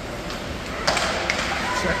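Ice hockey play in an arena: a steady rink hubbub with one sharp clack about a second in, as of a stick or puck strike, and a fainter tap soon after.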